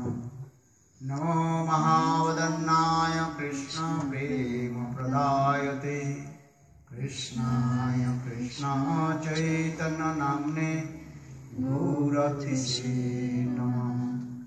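A man's voice chanting a devotional song into a microphone in long, held, melodic phrases, with brief pauses about a second in and about halfway through.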